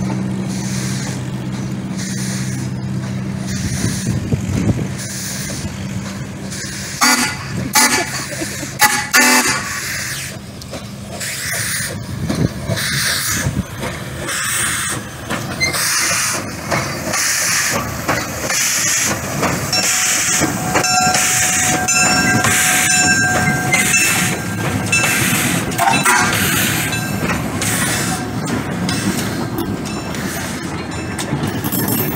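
Small narrow-gauge-style steam locomotive rolling slowly past with the sounds of steam and running gear, followed by its wooden passenger cars rolling by on the rails. A few sharp knocks come about seven to nine seconds in, and a held tone sounds for several seconds past the middle.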